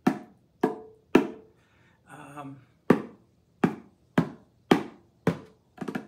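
Bongos played by hand: about nine single strikes, spaced roughly half a second to a second apart, each ringing out briefly, with a break about two seconds in.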